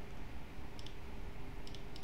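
Light computer mouse clicks as a line is drawn on a chart: two faint clicks about a second apart, over a faint steady hum.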